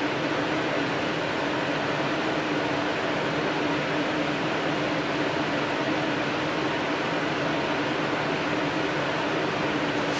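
Steady mechanical hum and hiss, with a low tone held evenly throughout.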